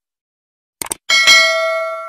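Sound effects for an animated subscribe button: a quick mouse double-click just under a second in, then a bright bell ding that rings on and fades away.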